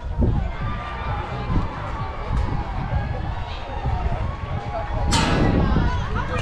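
Spectators' voices and calls at a youth baseball game, over a constant low rumble. About five seconds in comes a sudden sharp loud sound, followed by louder voices.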